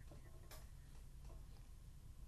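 Near silence: a faint low hum with a few faint ticks, the plainest about half a second in.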